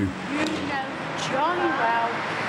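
Steady road noise of a car driving past, with faint voices over it.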